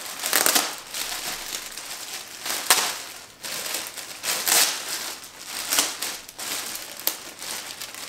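Plastic jersey packaging bag crinkling and rustling as it is handled and opened, in repeated bursts with one sharp crackle about two and a half seconds in.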